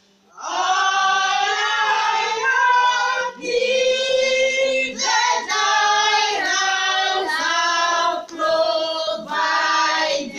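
A small group of women and a teenage boy singing a hymn together unaccompanied. The singing starts about half a second in and runs in phrases with short breaks between them.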